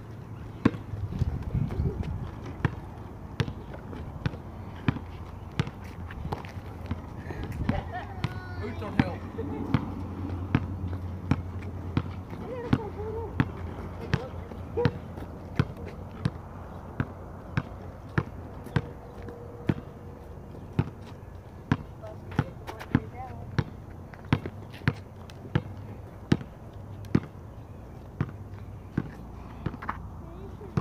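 Basketball being dribbled on an asphalt lot: a steady bounce a little more than once a second, each one a sharp smack off the pavement.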